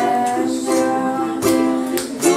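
Ukulele strummed in chords, with a girl's voice singing along.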